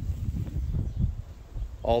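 Wind buffeting the microphone outdoors: an uneven low rumble that rises and falls, with a man's voice starting near the end.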